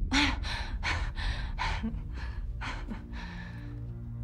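A woman's breathy, disbelieving laugh: a run of about seven short, airy exhalations over three seconds. Soft music comes in near the end.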